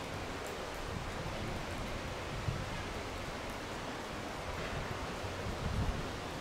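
Steady outdoor background hiss with low rumbles of wind on the microphone, and a single short tap about two and a half seconds in. No bird calls stand out.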